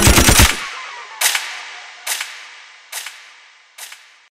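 A rapid burst of sharp, gunfire-like hits, a machine-gun sound effect ending the drill beat. It is followed by four echoes of it, about one every second, each fainter than the last.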